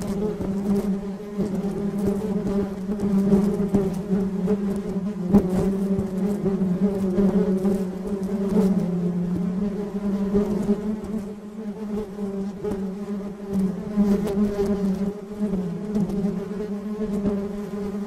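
A colony of honey bees buzzing together: a steady low drone of many wings that swells and dips a little, with small clicks and taps scattered through it.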